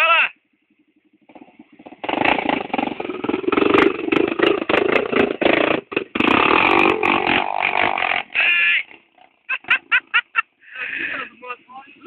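Honda NX350 Sahara trail bike's single-cylinder four-stroke engine revving hard for about six seconds as it climbs the muddy trail past the microphone, after a faint idle at the start.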